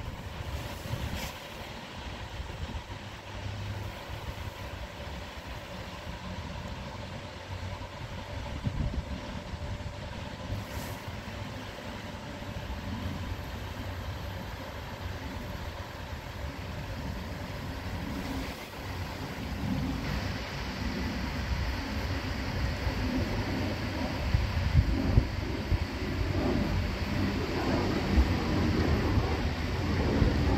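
Jet engine noise from a United Boeing 737-700 (737-724) on approach, its CFM56 turbofans drawing nearer: a rumbling drone that grows steadily louder, most of all in the last third.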